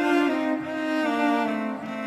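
Background music: slow string music with long held notes that change pitch from one to the next.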